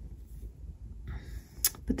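Faint handling noise as a small plastic plant pot topped with gravel is lifted and held up, over a low rumble, with a short sharp click near the end.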